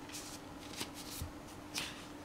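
Paper rustling and sliding as a card mailer is drawn out of a paper envelope, in four or five short scrapes.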